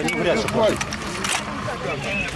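Men's voices speaking Russian briefly over outdoor background noise, then a single short, sharp knock about a second and a half in.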